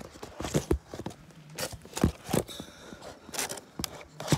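Handling noise on the recording device's microphone: irregular knocks and rubbing as it is picked up and moved about.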